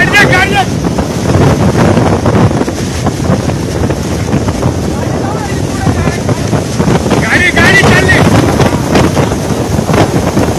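Cyclone-strength wind gusting hard and buffeting the phone's microphone with a loud, continuous rush of noise that rises and falls from moment to moment. A person laughs at the start.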